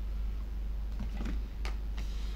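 A few faint, short computer-keyboard clicks over a steady low hum.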